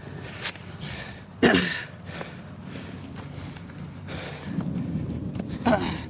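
Rustling and handling noise as motorcycle gloves are pulled off a detained rider's hands and handcuffs are handled, with a sharp click about half a second in and one louder short sound about one and a half seconds in.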